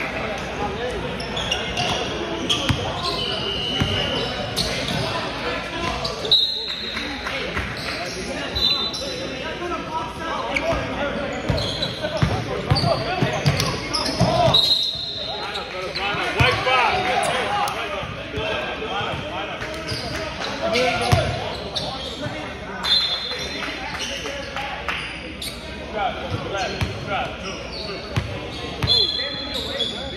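A basketball game in a gym: a ball bouncing on the hardwood court and players calling out, echoing in the large hall.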